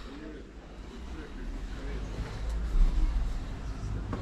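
Faint, indistinct voices in the background over a low rumble that swells and then eases off around the middle.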